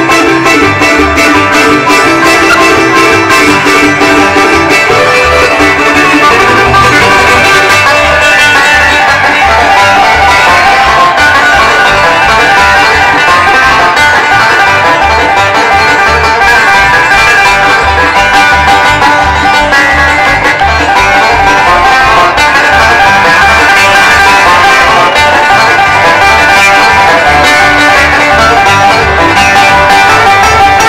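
A bluegrass band playing live: banjo, fiddle, mandolin, acoustic guitar and upright bass, with the bass keeping an even beat under the picked strings.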